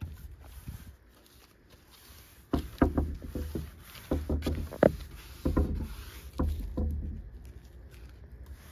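A paintbrush stroked back and forth over cedar boards, brushing on clear exterior sealer: after a quiet start, about four bursts of scrubbing strokes roughly a second apart, with small knocks of the brush against the wood.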